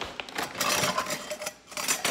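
Rustling and light clattering of small play-kitchen things being rummaged through close to the microphone, in uneven spurts that are busiest about half a second to a second in and again near the end.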